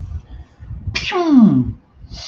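A man sneezing once, loudly: a sharp burst whose voice then falls steeply in pitch as it dies away.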